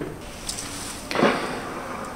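Handling sounds of a small plastic flip-top container being taken out from between rocks and opened by a gloved hand: a faint click, then one louder short scrape or pop about a second in.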